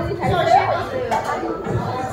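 Chatter of several people's voices talking over one another in a busy restaurant.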